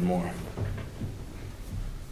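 A man's last word trailing off, then a couple of faint knocks and handling sounds as a large paper site plan on an easel is let go.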